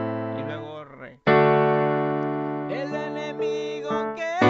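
Electronic keyboard in a piano voice playing sustained chords. The first chord dies away about a second in, and a new chord is struck just after it and rings, fading slowly.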